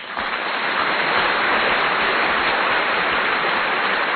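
A steady, even hiss of noise with no music or voice, level throughout.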